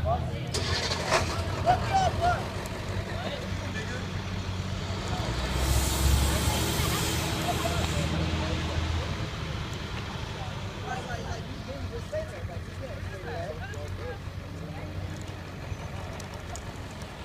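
School bus diesel engines running as the buses pull away, with a loud air-brake release hiss lasting about two and a half seconds starting about five and a half seconds in, and a surge of engine sound under it. Engine sound eases off toward the end.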